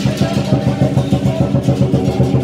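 Lion dance percussion: a large drum beaten with clashing cymbals in a steady rhythm of about four beats a second.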